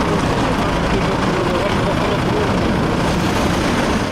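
Steady engine and street noise from a stopped city minibus, with faint, indistinct voices of people talking beside it.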